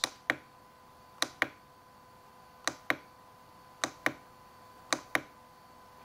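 Clicks of the RadioMaster TX16S transmitter's page button. It is pressed about five times at roughly one-second intervals, and each press gives a quick double click, stepping through the Lua script's menu pages.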